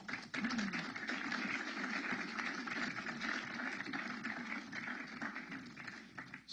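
Audience applauding, a steady patter of many hands that dies away near the end.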